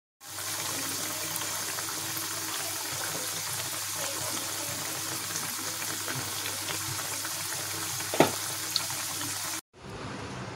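Onion fritters deep-frying in hot coconut oil: a steady sizzle of bubbling oil. Near the end there is one sharp tap and a smaller one just after, and the sizzle cuts off suddenly.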